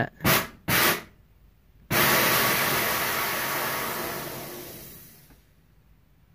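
Nitrous purge valve on a drag car's nitrous kit: two short hisses under a second in, then, about two seconds in, a long hiss that starts at full force and dies away over some three seconds.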